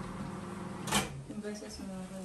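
Low, faint talk in the room, with one sharp knock about halfway through.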